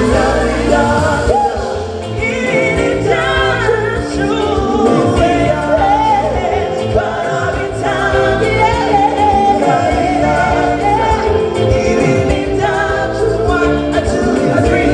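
A live band playing, with women singing lead and backing vocals into microphones over keyboard and a steady bass line.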